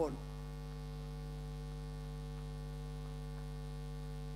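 Steady electrical mains hum, a constant low buzz made of several steady tones, with no change through the pause.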